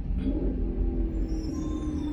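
Steady low rumble of a car's engine and road noise heard inside the cabin while driving in traffic, with a faint steady hum above it.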